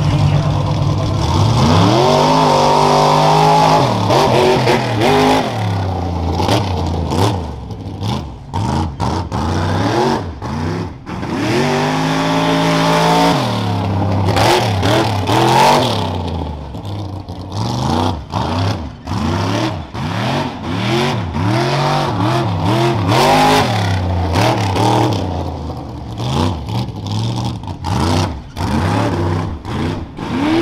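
Modified pickup truck's engine revving hard over and over as it races a dirt rough-truck course, the pitch climbing and dropping sharply each time the throttle is opened and closed.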